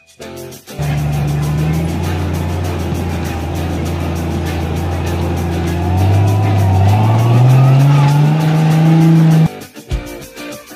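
Engine of a modified Jeep rock crawler running under load as it climbs a rock slab. It holds steady revs, then revs higher over the last few seconds before cutting off abruptly.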